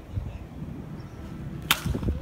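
A baseball bat cracking against a pitched ball once, a sharp single crack about one and a half seconds in, over a low background rumble.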